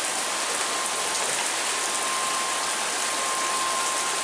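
Heavy rain falling in a steady downpour: a dense, even hiss of drops splashing onto grass, pavement and standing water.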